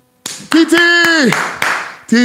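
A man's voice holding one long drawn-out exclamation that falls off in pitch at the end, mixed with a few sharp hand claps.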